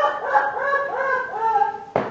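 A person's voice making a run of high, wordless cries, each short cry rising and falling in pitch, cut off by a sharp knock at the very end.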